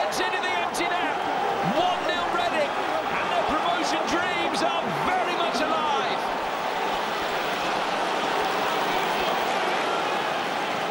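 Football stadium crowd: many fans shouting and singing at once over a steady roar, with a few sharp knocks.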